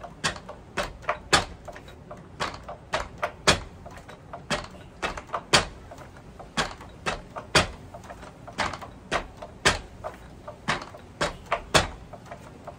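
Wrapped fists striking a makiwara in a fast, steady series of knocks, about three a second, with a louder strike roughly once a second.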